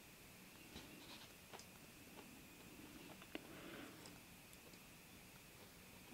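Near silence with a few faint, scattered ticks and a soft rubbing: small pliers gripping and bending thin round copper-coloured jewellery wire by hand.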